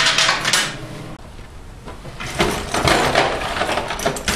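Steel vise-grip pliers and chain clinking and clattering as they are picked up and handled, in a short burst at the start. A longer stretch of dense handling noise follows from about halfway through.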